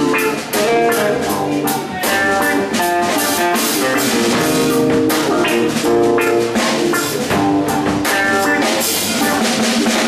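Live rock-blues band playing an instrumental passage: guitar lines over a drum kit keeping a steady beat.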